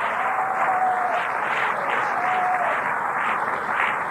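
Audience applauding and cheering, a steady wash of clapping with a few voices calling out, heard through an old cassette recording of a live hall.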